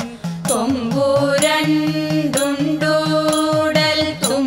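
A women's chorus sings a Thiruvathirakali devotional song in unison, holding long notes that glide between pitches. Short sharp strokes of hand-clapping and drum mark the beat about once a second.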